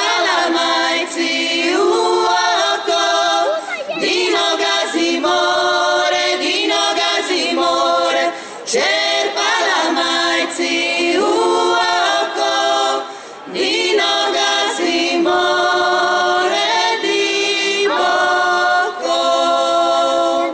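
Women's folk vocal group singing a traditional Croatian song a cappella, several voices together, in held phrases with short breaks between them.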